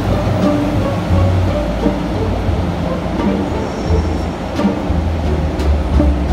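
Background music with a heavy, rhythmic bass line, over street noise.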